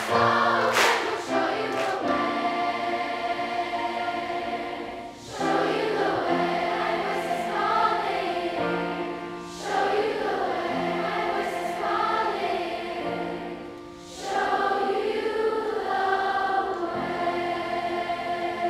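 A massed children's choir of about 970 sixth-grade voices singing. The notes are held in long phrases, with short breaks about five, nine and a half, and fourteen seconds in.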